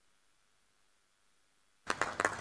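Silence: the hall's sound feed is muted. Near the end it comes back abruptly with a click, as a microphone opens onto room noise.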